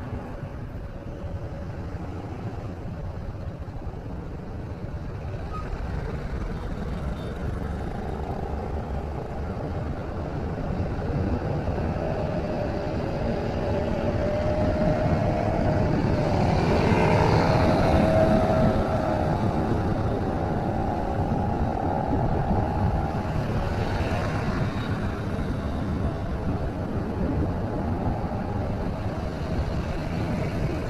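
Continuous road-traffic noise of cars, trucks and motorcycles. It grows louder toward the middle, where a vehicle passes close, then eases.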